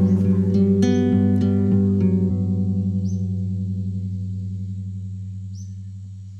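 Acoustic guitar ending a song: a few last strokes of the final chord about a second in, then the chord is left to ring and fades away slowly.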